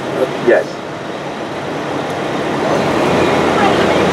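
Street traffic noise swelling over a few seconds as a heavy vehicle's engine comes closer, with a steady low hum setting in near the end.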